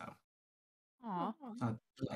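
A person's brief wordless vocal sound, its pitch swinging down and up, lasting under a second and followed by a short spoken word.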